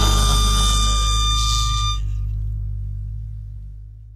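Final chord of a folk-punk band's song ringing out. A held high note stops about two seconds in, while the low bass notes fade slowly away.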